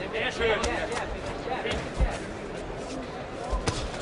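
Boxing-arena ambience with voices from around the ring, and sharp thuds of blows landing, one about two seconds in and another near the end.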